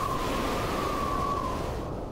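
Soundtrack sound design: a steady rushing noise with a single held high tone on top, the tone dipping slightly and stopping shortly before the end as the noise begins to fade.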